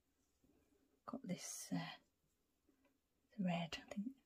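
A woman's quiet, partly whispered speech in two short bursts, about a second in and again near the end.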